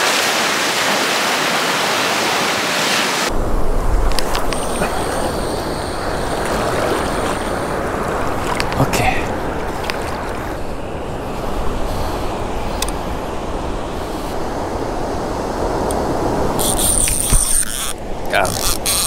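Surf washing and fizzing in the shallows for the first few seconds. Then comes a steady rush of wind and surf with a heavy low rumble, broken by a few sharp clicks from handling a rod and conventional reel.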